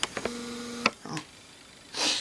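A woman's short closed-lipped 'mmm' hum held on one steady pitch for about half a second, with small mouth clicks before and after it. A soft breathy sound follows at the end.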